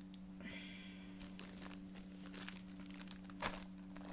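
Plastic product packaging being handled: faint, scattered crinkles and rustles, one a little louder near the end. A steady low hum runs underneath.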